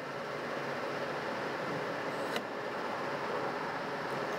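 A petrol pump nozzle's automatic shut-off clicks once about two and a half seconds in as a car's fuel tank is topped off after it has already shut off twice. A steady rushing noise runs underneath.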